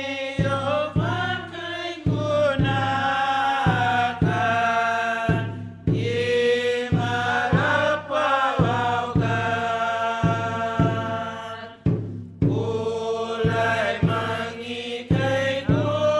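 A group of voices singing a chant-like hymn in long phrases over a steady percussive beat, a little under two beats a second, with brief pauses between phrases.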